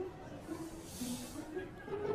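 A soft hiss, about a second long near the middle, over quiet background music and murmur.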